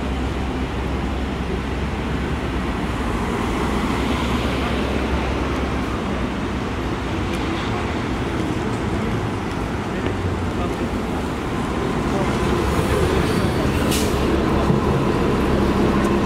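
Street traffic with a New Flyer XD40 Xcelsior diesel city bus approaching and pulling in to the curb, its low engine rumble growing louder over the last few seconds.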